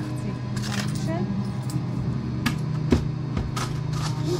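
Café counter sounds: a steady low machine hum, with several sharp clicks and clinks in the second half and brief background voices.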